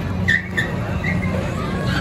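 Steady low drone of a Rockin' Tug fairground ride's machinery running, with a few short high squeals, the loudest about a third of a second in.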